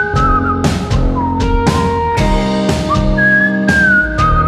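Indie rock band playing live: a whistled melody line, wavering and gliding, over electric bass, guitar and drums.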